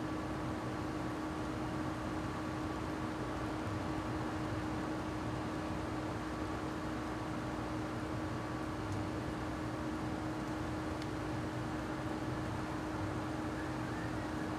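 Steady background noise: an even hiss with a constant low hum running under it, without change and with no distinct animal calls.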